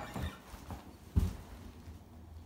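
A few short knocks and thumps of movement as the player gets up from a wooden chair holding an acoustic guitar, the loudest a little over a second in.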